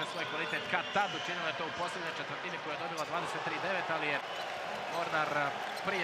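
Basketball game in an indoor arena: a ball bouncing on the hardwood court with sharp knocks, over voices in the hall.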